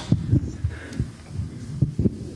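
Irregular low thumps and knocks of handling and movement close to a pulpit microphone, with a brief paper rustle near the middle.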